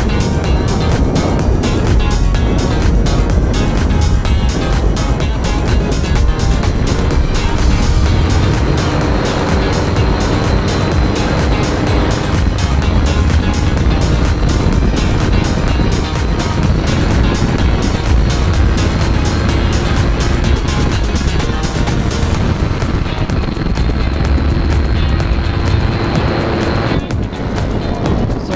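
Background music with a steady beat; the beat breaks off briefly near the end.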